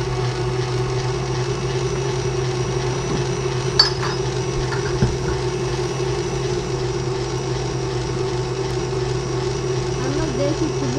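Stand mixer running steadily, its wire whisk beating cake batter in a metal bowl, with one sharp click a little under four seconds in and a smaller one about a second later.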